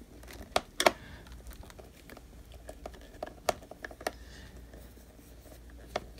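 Handling noise: a scattered series of light clicks and taps, the strongest about a second in, over a low steady hum.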